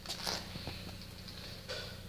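Quiet room tone: a low steady hum with a few faint rustles and small clicks.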